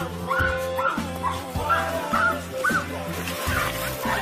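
Background music with a steady low bass line, over which come short high yips, about two a second.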